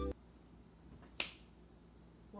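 Music cuts off right at the start, leaving near silence with one sharp click a little over a second in.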